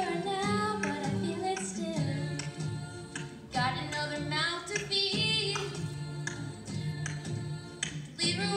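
A middle school choir singing a pop song, with one girl singing solo into a handheld microphone over the other voices.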